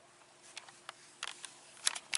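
Handling noise of a handheld camera being moved about: a few scattered soft clicks and taps, the sharpest one near the end, over a faint steady hum.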